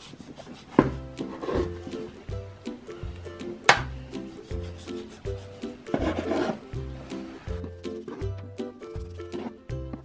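Chef's knife sawing through a log of rolled cinnamon-roll dough and knocking on the worktop, with two sharp knocks about one second and about four seconds in. Background music with a steady bass line plays throughout.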